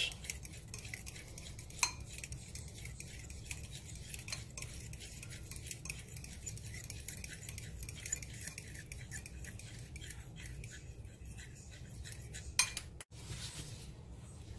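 A metal fork beating egg yolks in a ceramic bowl, with a quick run of light clinks as the tines hit the bowl, and a sharper clink about two seconds in.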